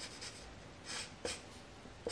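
Black felt-tip marker drawing on paper: a few short scratchy strokes as lines are drawn.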